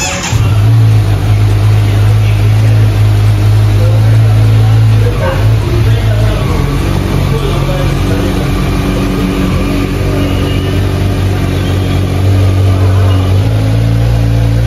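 A 2023 Kawasaki Z900's inline-four engine catches right at the start and runs at a steady idle. Its note drops about five seconds in and comes back up near the end.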